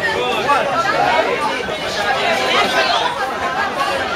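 Chatter of many people talking at once, overlapping voices echoing in a large hall.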